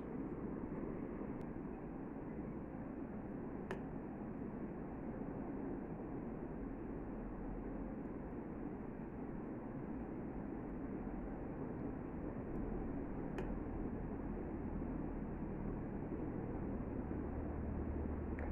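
Quiet, steady background hiss with a few faint, isolated clicks of metal knitting needles as stitches are knitted and passed over to bind off.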